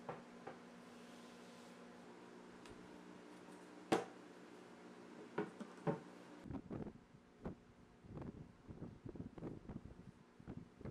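Faint handling of a birch-plywood box lid: a sharp knock about four seconds in and two softer taps soon after. From about six and a half seconds, a run of short, soft strokes of a paintbrush working paint onto plywood.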